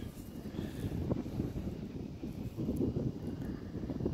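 Low, uneven rumble of outdoor background noise, with a faint tick about a second in.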